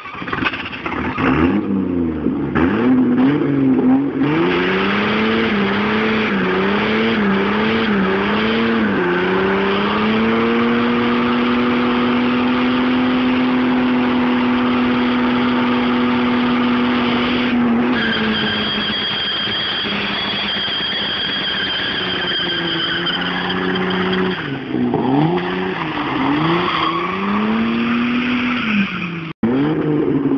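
Turbocharged Opel Omega 2.6-litre straight-six revving hard in a burnout over the noise of the spinning rear tyres. The revs rise and fall repeatedly for several seconds, are then held high and steady for about eight seconds, and rise and fall again near the end.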